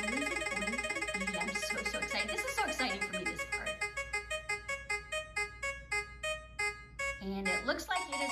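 Spinning-wheel picker's ticking sound effect played through laptop speakers: quick pitched ticks that slow steadily as the wheel winds down, stopping about seven seconds in as it lands on the winner.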